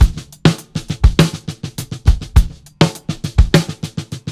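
Rock drum kit playing a beat on its own at the start of a song, kick drum and snare in a steady rhythm.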